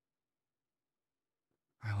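Near-total silence, then a man's soft voice starts speaking ("I…") just before the end.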